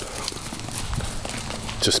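Footsteps walking across grassy ground, a run of soft uneven thumps with rustling from the hand-carried camera.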